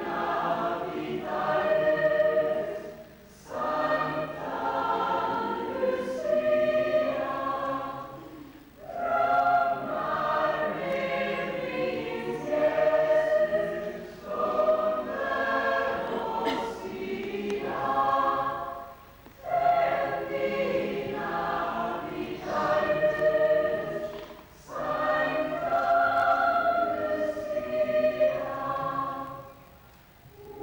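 Lucia procession choir singing in long phrases of about five seconds, with a short break for breath between each.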